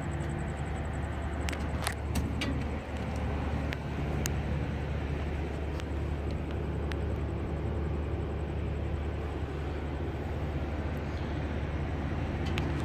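Supercharged 5.7-litre small-block Chevy V8 idling steadily, with a few sharp clicks in the first four seconds.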